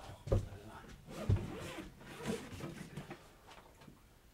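Two sharp knocks, about a third of a second in and again a second later, as a lid is lifted and beers are fetched from a cooler, followed by softer rummaging and handling noises that die away near the end.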